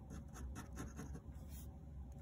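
Pen scratching on paper in quick, repeated short strokes as a small box is cross-hatched; faint.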